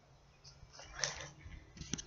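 A few faint, brief rustles of a person moving through brush, pushing past branches.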